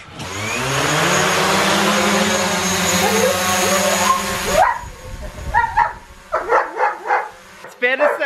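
DJI Mavic Pro quadcopter's motors spinning up and its propellers whirring steadily; the pitch rises over the first second, then holds, and the sound cuts off suddenly about four and a half seconds in. After that a dog barks several times.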